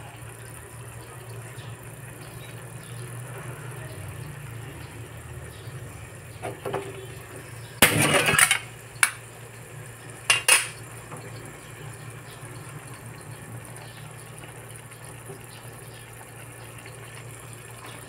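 Kitchenware clinking a few times over a steady low hum: a short clatter about eight seconds in, then a single click and a quick pair a couple of seconds later.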